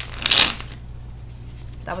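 A deck of oracle cards being riffle-shuffled by hand: one brief ripple of cards lasting about half a second near the start.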